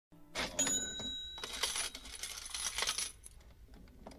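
Several metallic clinks, each followed by a ringing tone, like small coins dropping; they die away about three seconds in.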